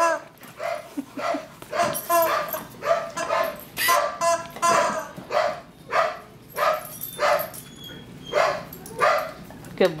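Dog barking in a run of short, separate barks, about one to two a second.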